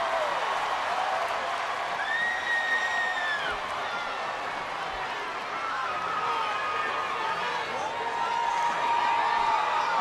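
Large arena crowd cheering and shouting in a steady wash of noise, with single high whoops rising above it, the clearest a drawn-out one about two seconds in.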